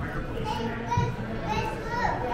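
Children's voices in a large hall: several short, high-pitched calls and bits of talk over a background of other people's chatter.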